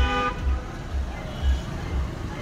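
A short car horn toot at the start, over background music with a steady bass beat of about two beats a second.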